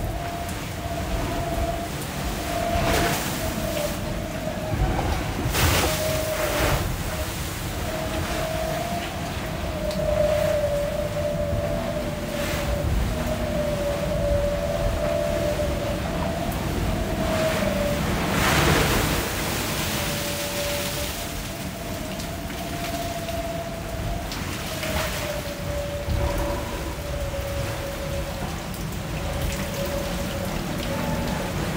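An IMOCA ocean-racing yacht driving hard through rough seas: a constant rush of water and wind around the hull, with several sudden bursts of spray hitting the deck and canopy, the biggest about two-thirds of the way through. A steady, slightly wavering whine runs through the noise the whole time, part of the relentless noise the boat makes in this weather.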